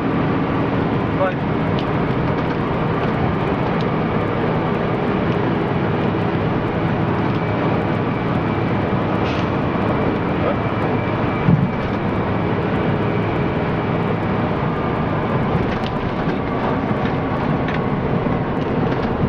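Steady engine and road noise of a moving bus, heard from inside near the front, with one brief knock a little past halfway.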